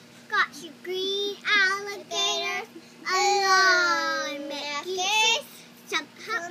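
A young girl singing unaccompanied in short phrases, with a long held note in the middle that slowly drifts down in pitch.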